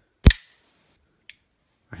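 Zero Tolerance 0055 bearing flipper knife flipped open, the blade swinging out fast and locking with one loud, sharp metallic click that rings briefly. A faint tick follows about a second later.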